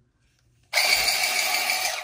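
Battery-powered electric letter opener (four AA cells) running: its motor whirs steadily as it feeds an envelope through and slices off the edge, starting under a second in and stopping after just over a second, quick.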